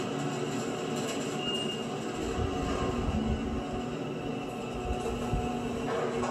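Elevator car travelling upward: a steady rumble with a few held hum tones, heard through a TV's speakers.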